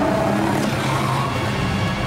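A wild boar squealing, its cry sliding up in pitch over a low, steady musical drone.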